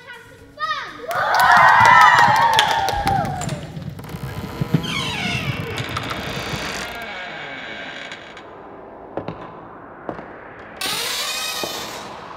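Many children's voices shrieking at once, over clattering knocks, fading after a few seconds. A second burst of shrieks comes near the end.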